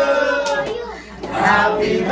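Singing: held, sliding sung notes that fade about a second in, then a new note swells up near the end.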